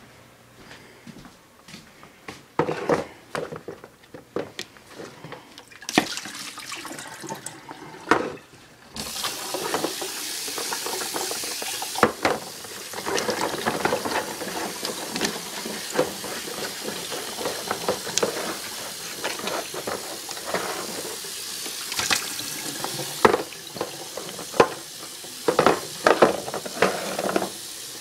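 A kitchen tap turned on about nine seconds in and left running into the sink, as water is drawn for a cat's plastic gravity waterer. Knocks and clatter of the plastic waterer and bottle being handled come throughout, alone at first and then over the running water.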